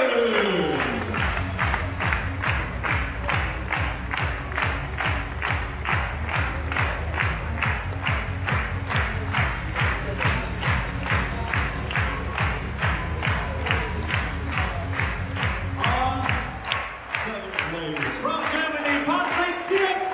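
Music with a steady beat, with a group of people clapping along in time, about two to three claps a second. Voices come in near the end.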